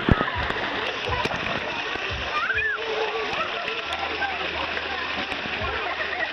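Pool water splashing and sloshing steadily, with a few sharper splashes near the start, and children's voices and calls from the pool mixed in.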